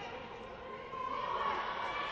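Players' and spectators' voices calling out in a large, echoing gym hall, with a louder shout starting about a second in.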